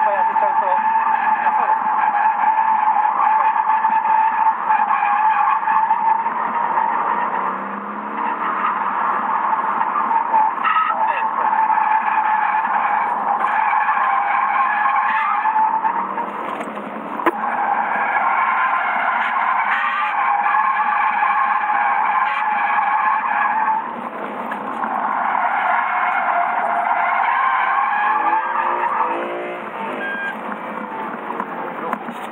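Car tyres squealing in long, steady wails as the car slides sideways under countersteer, in four spells with short breaks between. The engine is heard in the breaks.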